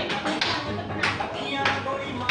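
A group of people clapping their hands in time to music, about three claps every two seconds, with voices in the background.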